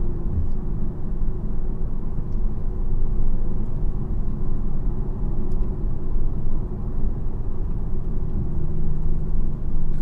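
Infiniti Q50 3.0t twin-turbo V6 with a custom catback exhaust, heard from inside the cabin while cruising at steady speed. The exhaust drones low and even, with road noise underneath.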